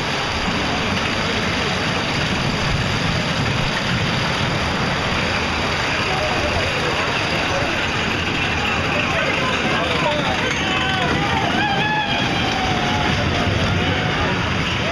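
A small caterpillar kiddie roller coaster running around its track: a steady rush of noise. Riders' voices call out, rising and falling, over it in the second half.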